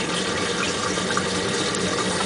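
Home-made Tesla CD turbine running on faucet water pressure at full throttle: a steady rush of water through the turbine, with a faint low hum underneath.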